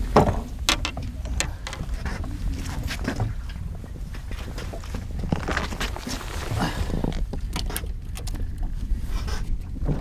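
Wind rumbling on the microphone, with scattered knocks, clicks and scrapes as a fish is handled on the boat deck and a tape measure is pulled out along it.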